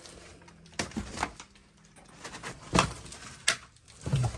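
A few scattered knocks and thumps, the loudest about three seconds in, with quiet in between.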